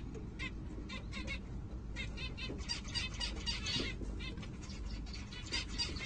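Finch nestlings begging in a nest box: rapid, high-pitched chirping calls in repeated bursts, busiest in the middle and again near the end.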